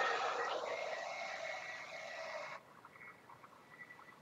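Bissell upright carpet cleaner's motor running with a whine that rises as it spins up. It cuts off suddenly about two and a half seconds in, leaving a faint whine as it winds down.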